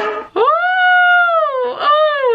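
A woman's long, high-pitched wordless 'ooh' exclamation that slides up, holds, then falls away, followed by a shorter second one near the end.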